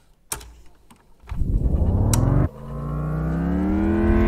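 Electronic swell in a podcast's intro music. After about a second of near quiet with a click, a low tone with deep bass slides upward in pitch, breaks off briefly past the halfway point, then holds and keeps rising slowly.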